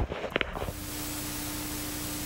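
TV-static sound effect used as an editing transition: a steady, even hiss with a low hum tone under it, cutting in about half a second in.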